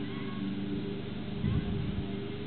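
A steady low mechanical hum, like a motor running, with a short low voice-like sound about one and a half seconds in.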